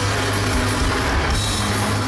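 Rock band playing live through a large-venue PA: an instrumental stretch of electric guitar, bass and drums with no singing.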